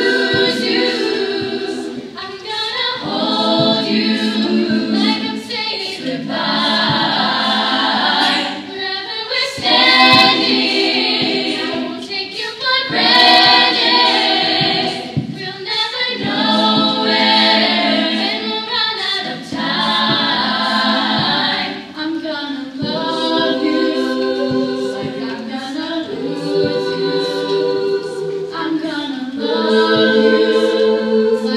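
Teenage girls' a cappella group singing in multi-part harmony, voices only with no instruments. The phrases are held and break off every few seconds.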